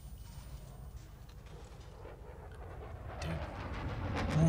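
Quiet, steady low rumble from a film's soundtrack.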